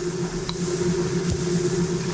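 A steady low hum with an even hiss underneath, the background noise of a roughly twenty-year-old interview recording played back.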